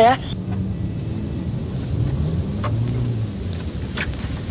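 Renault 4 car engine running as the car pulls up, its note rising and then dropping near the end as it slows.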